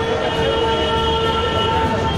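A train horn held as one long chord of several steady tones, stopping just before two seconds, over steady street noise.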